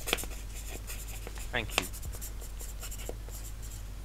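Light, irregular clicking and scratching from the far end of a phone call as a spelled-out email address is taken down, with a brief voice sound a little after halfway.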